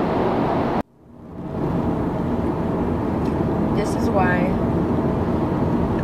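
Steady car cabin road and engine noise from a moving car. It cuts out abruptly less than a second in and fades back up over about a second, with a short vocal sound around four seconds in.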